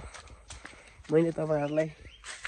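A man speaking a short phrase about a second in, the loudest sound. Before it, a few faint footstep clicks on a dry trail.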